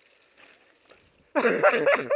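A person laughing loudly in a run of short pitched bursts, starting about one and a half seconds in.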